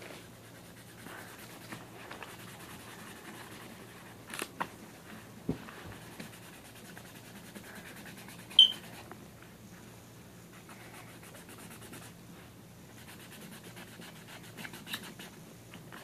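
Faint scratching of a pen being drawn across notebook paper, with a few small clicks and a low steady hum underneath. A short, high-pitched squeak about eight and a half seconds in is the loudest sound.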